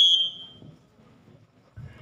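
Volleyball referee's whistle: one steady high blast that ends about half a second in, the signal for the next serve. Then near silence, with a faint low sound just before the end.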